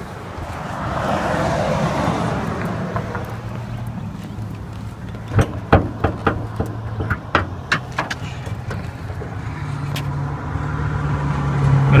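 A Suzuki Swift's 1.3-litre four-cylinder engine idling steadily, growing louder near the end. A few sharp clicks and knocks come between about five and eight seconds in.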